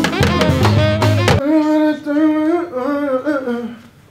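Music with a drum beat and bass cuts off abruptly about a second and a half in. A lone voice then sings a wordless melody without accompaniment, fading out near the end.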